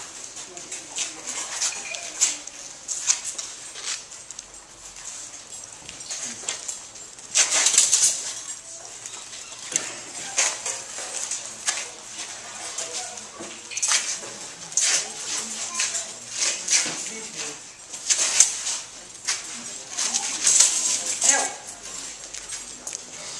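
Steel rapier blades clashing and scraping in a fencing bout: an irregular series of light, high clinks and scrapes coming every second or two, with low voices murmuring underneath.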